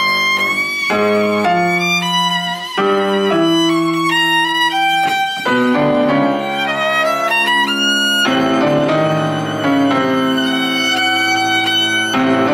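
Violin playing a melody of held notes with vibrato, accompanied by grand piano; the texture grows fuller with a sustained chord about two-thirds of the way through.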